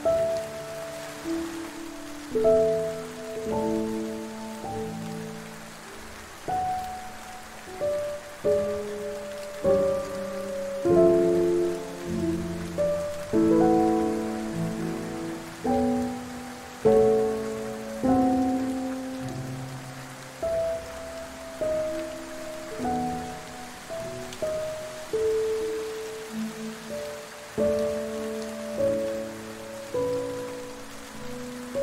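Slow, soft piano music, single notes and chords struck every second or two and left to fade, over a steady hiss of rain.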